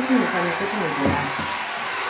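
Handheld hair dryer running steadily, a continuous even whir with a faint steady hum in it.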